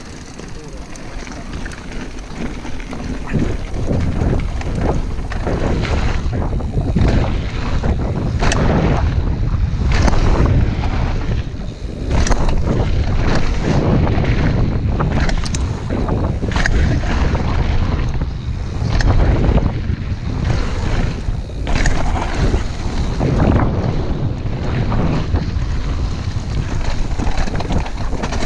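Wind buffeting a helmet-mounted camera microphone while a mountain bike rides fast down a dirt and gravel trail, with tyre rumble and repeated knocks and rattles from the bike over bumps. The noise builds over the first few seconds as the bike picks up speed, then stays loud.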